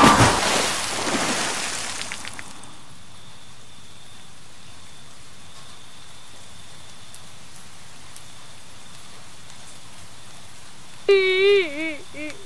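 A loud splash of water, the loudest sound here, fading out over about two seconds as a vehicle drives through a puddle, followed by a steady soft hiss. Near the end a cartoon cat's voice starts a high, wavering crying wail.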